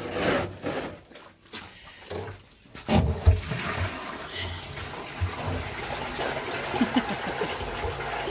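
Water rushing along the open channel of a brick drain inspection chamber, starting about three seconds in and running steadily; a few short knocks and rustles come before it.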